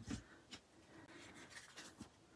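Near silence with faint rustling of cardstock being handled.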